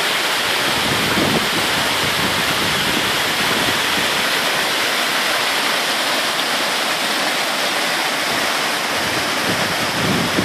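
Lineham Falls, a tall waterfall spilling down stepped rock ledges, rushing with a loud, steady roar of falling water.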